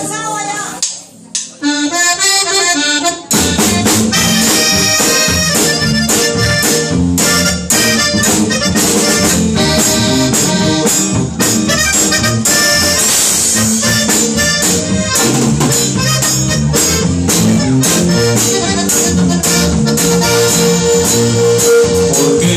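Live band playing an instrumental intro on piano accordion, acoustic guitar, electric bass and drum kit. After a short accordion lead-in, the full band comes in about three seconds in and carries on with a steady beat.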